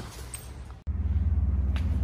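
Quiet room noise, then after an abrupt cut about a second in, a steady low hum.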